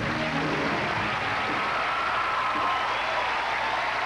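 A studio audience applauding and cheering as a live band's song ends, with a faint thin tone held over the clapping.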